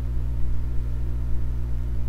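Steady low electrical hum with a few faint higher overtones, unchanging throughout.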